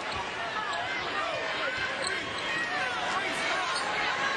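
Arena crowd murmur, with basketball shoes squeaking in many short chirps on the hardwood court and a basketball bouncing.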